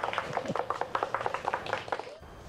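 A few people clapping, irregular claps several times a second.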